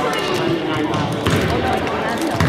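A basketball bouncing on a wooden gym floor, with voices and chatter from children and adults around it.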